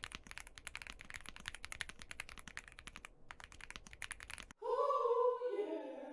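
Fast typing on a stock Womier SK-71, a 65% aluminium-framed mechanical keyboard with linear switches: a dense run of keystroke clicks. About four and a half seconds in the typing stops and a short voice clip takes over, falling in pitch.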